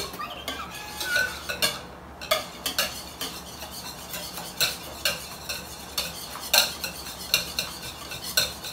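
Wire balloon whisk beating a thin egg mixture by hand in a mixing bowl: a swishing stir broken by irregular clicks of the wires against the bowl. The mixture stays runny and frothy and is not thickening.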